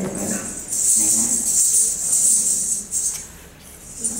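Brass ankle bells (ghungroo) on a dancer's feet jingling as she steps and stamps, loudest through the middle and fading away near the end.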